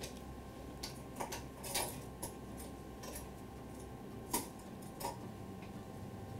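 A handful of faint, scattered clicks and taps, the loudest a little over four seconds in, over a steady low room hum.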